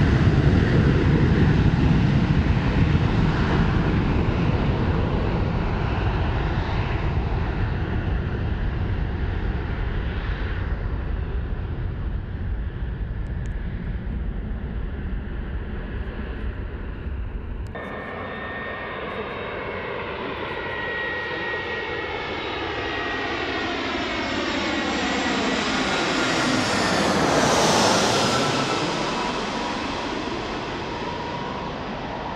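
Ryanair Boeing 737 jet engines at high thrust on the runway, a deep rumble slowly fading as the jet rolls away. After a sudden cut, an Airbus A320-family airliner comes in on final approach: its engine whine grows, sweeps down in pitch as it passes low overhead near the end, and is loudest there.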